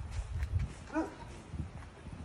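A dog gives a single short bark about a second in, over low rumbling thumps.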